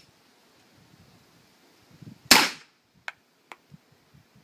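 Fort-12G 9 mm P.A.K. gas pistol firing a single Teren-3 gas cartridge about two seconds in, a sharp shot with a short tail, and the cartridge is strong enough to cycle the slide and reload. Two light clicks follow about a second later.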